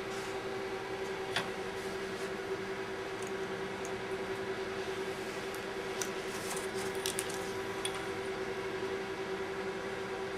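Steady, even electrical hum from room equipment. Over it, a few faint, short scratches and ticks, mostly bunched six to seven seconds in, from a blade trimming plastic shrink film along a metal ruler.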